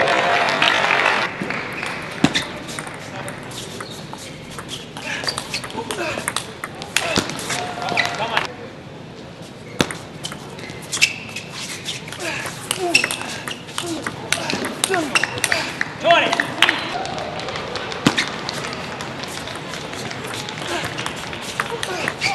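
Table tennis ball clicking sharply and irregularly against bat and table, over the murmur of voices in a large hall.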